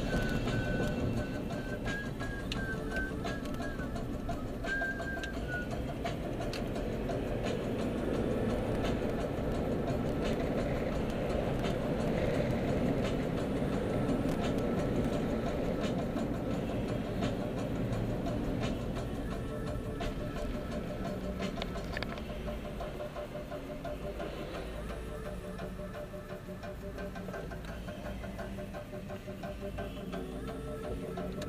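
Music playing inside a moving car's cabin, over steady engine and road noise.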